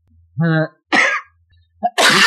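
A person coughs about a second in, after a short voiced sound.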